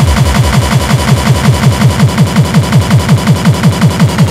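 Hardcore techno (gabber) DJ mix: a rapid, even run of kick drums at about six a second, each a short thump falling in pitch. The deepest bass drops away about half a second in.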